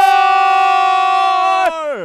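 A sports commentator's long, drawn-out shout of 'goal': one loud, steady high note held for about a second and a half, then falling away.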